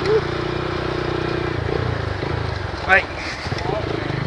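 A small motorcycle's engine running at a steady, low riding pace, heard from the rider's seat.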